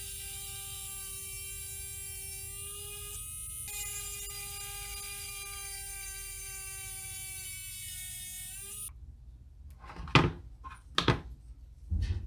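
Pen-style rotary carving handpiece running at a steady speed, a constant high whine, as its bit works at the small wooden lure body; it cuts off about nine seconds in. A few sharp knocks follow as the work is handled and put down.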